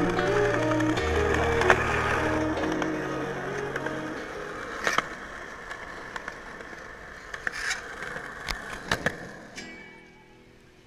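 Music with held chords and bass notes fades out over the first few seconds. Skateboard wheels then roll on concrete, with a few sharp clacks of the board, about five seconds in and near the end.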